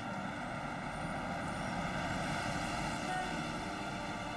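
Steady distant vehicle drone of a city sound bed, even in level throughout, with no sharp events.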